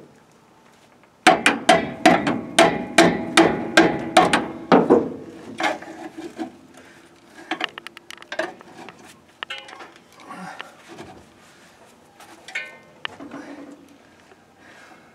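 Hammer blows on a rusted, seized cast-iron front brake drum: about a dozen hard strikes at roughly three a second, the drum ringing after each, to free a frozen wheel. After that come lighter knocks and a rattle of the brake shoe springs inside the drum as it is worked by hand.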